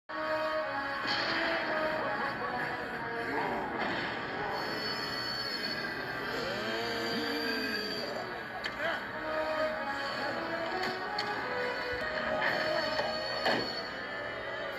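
A cartoon's soundtrack played on a television, heard through the set's speaker: held notes of music with voices gliding over it and no clear words.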